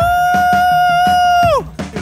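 A person's long, high 'woo' shout that rises at the start, holds one pitch and falls away about a second and a half in, over background music with a drum beat.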